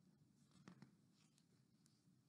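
Faint rustle of a book page being turned, with a few soft paper clicks about half a second in; otherwise near silence.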